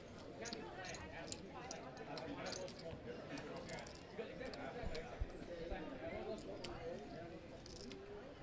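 Low background voices with frequent light clicks of poker chips being stacked and handled at the table.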